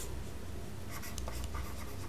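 Faint scratching of a stylus writing on a tablet, a few short strokes from about a second in, over a steady low hum.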